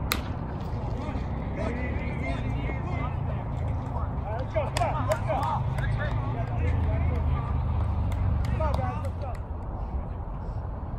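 A baseball bat strikes a pitched ball with a single sharp crack. Shouts from players and onlookers follow over a steady low rumble.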